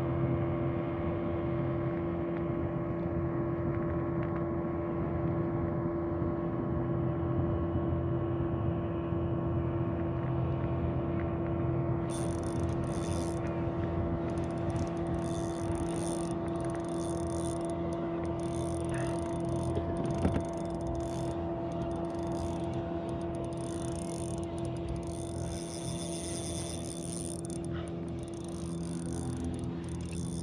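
A steady mechanical drone, like a motor running at constant speed, holding one unchanging pitch throughout, with a single short knock about twenty seconds in.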